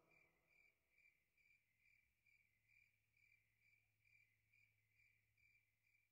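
Near silence: only an extremely faint, even chirping, about two pulses a second, over a faint low hum.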